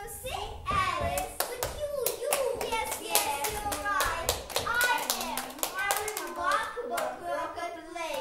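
Young children's voices on stage, with a quick run of sharp clicks through much of the first half.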